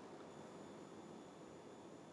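Near silence: faint steady room tone and microphone hiss.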